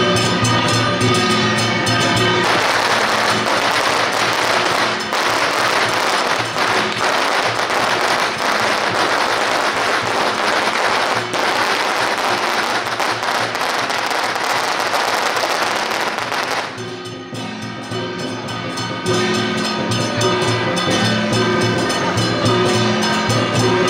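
Music with a beat, then about two seconds in a long string of firecrackers goes off: dense, unbroken crackling for some fourteen seconds that drowns out the music. The crackling stops abruptly and the music comes through again.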